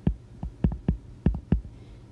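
Stylus tapping and knocking on a tablet screen while hand-writing a short label: about six short knocks at uneven spacing over a second and a half, with a steady low hum beneath.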